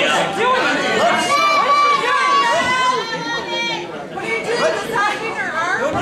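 Several voices of a small crowd shouting and calling out over one another, with one long drawn-out yell in the first half.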